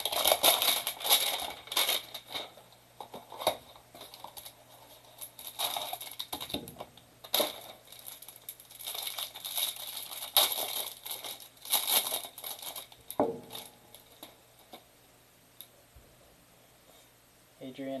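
Plastic wrapper around a stack of trading cards being torn open and crumpled, in irregular crinkling bursts that die down about thirteen seconds in.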